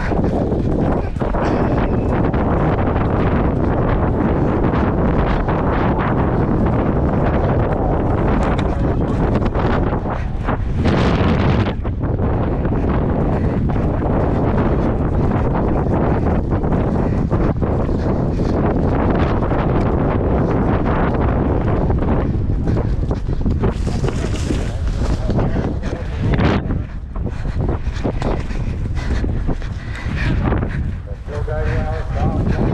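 Loud, steady wind buffeting the GoPro microphone carried on a galloping horse, the rush of air from the gallop covering nearly everything else. It dips briefly twice.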